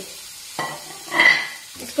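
Sliced onions, green chillies and ginger strips being tossed in a pan of melting butter. A low sizzle runs under a louder rush of tossing, about a second long, that starts about half a second in.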